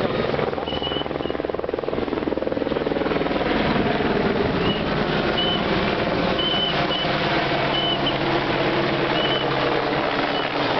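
A helicopter's rotor chopping steadily, joined by a rally car's engine that grows louder about three seconds in as the car approaches along the gravel stage. Short high chirps recur through it.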